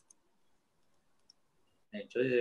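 Near silence in a pause of speech over a video call, broken by a few faint, short clicks: two right at the start and one a little past a second in. A voice resumes at the very end.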